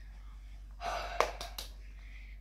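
A person's quick, noisy intake of breath, like a gasp, about a second in, with no voice in it and a couple of small clicks at its end.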